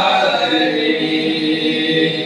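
Group of young men singing a Kannada Christian devotional song together, drawing out a long held note.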